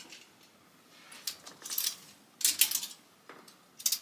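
Clothes hangers clattering and clicking against each other and the metal rail of a clothing rack as garments are pushed along and one is lifted off, in several short bursts, the loudest about two and a half seconds in and just before the end.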